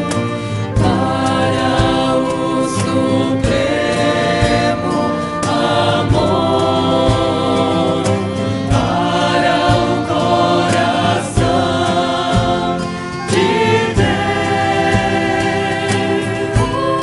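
A woman lead singer and women backing singers singing a Portuguese-language devotional hymn to Saint Joseph into microphones, in harmony and without pause.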